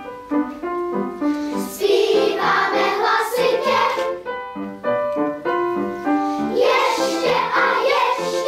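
Children's choir singing with piano accompaniment. The voices are fullest about two seconds in and again near the end, with separate piano notes running between.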